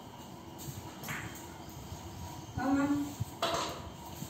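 A voice speaking a short phrase just past the middle, over low room sound, with a couple of brief noises about a second in and right after the voice.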